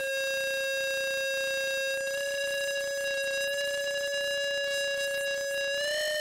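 A sustained electronic drone: one steady tone rich in overtones, held on a single pitch, that lifts slightly in pitch near the end.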